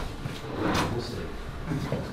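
Indistinct chatter of people moving about a meeting room, with a brief scrape a little under a second in.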